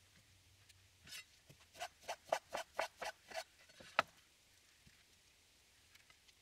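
Faint handling of peeled orange segments and lettuce leaves as segments are set onto a salad: a quick run of about eight soft rustles, roughly three a second, then a single sharp tap near the middle.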